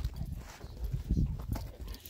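Footsteps on wood-chip mulch from a person and a Dalmatian moving about, heard as irregular low thuds.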